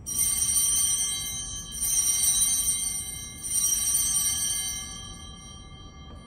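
Altar bells rung three times, about a second and a half apart, each ring a cluster of high bell tones that fades slowly, marking the elevation of the host at the consecration.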